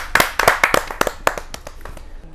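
A small audience clapping. The quick, dense claps thin out toward the end.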